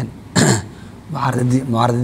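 A man clears his throat once, a short harsh burst about half a second in, then goes back to talking.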